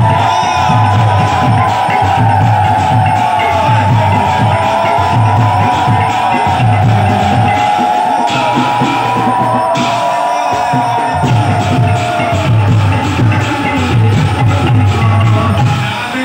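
Devotional music played loud over a crowd: a steady low drumbeat under a high melody line that slides up and down in pitch, with the drumbeat dropping out briefly about two-thirds of the way through.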